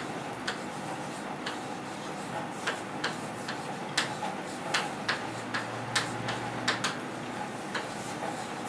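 Chalk on a chalkboard as words are written: a string of irregular sharp taps and clicks, each stroke of the chalk striking the board.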